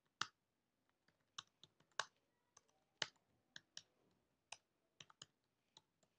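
Computer keyboard keystrokes: a slow, irregular run of single key clicks, about fifteen in all, some sharper than others.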